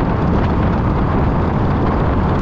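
Steady rush of wind and road noise on a handlebar-mounted camera as a Suzuki Gixxer 155 is ridden at speed, its single-cylinder engine running underneath. The road appears to run through a tunnel, whose walls may colour the sound.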